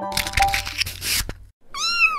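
A short jingle with a swishing rush for the first second and a half, then a single cat meow near the end that rises and then falls in pitch.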